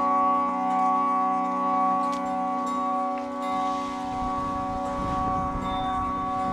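Harmonium drone held on several steady notes, with plucked tanpura strings ringing over it. A low rumble joins about halfway through.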